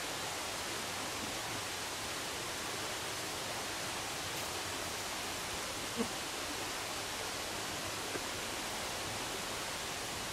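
Steady, even outdoor background hiss with no distinct source, and one brief faint sound about six seconds in.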